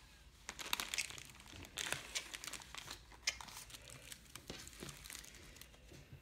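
A plastic snack wrapper crinkling as it is handled, in a string of irregular crackles.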